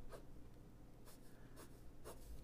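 Pen drawing on paper: a few short, faint scratchy strokes as lines are sketched.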